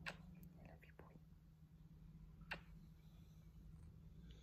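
Near silence, broken by two short, faint kiss smacks about two and a half seconds apart, with a few fainter ticks between them.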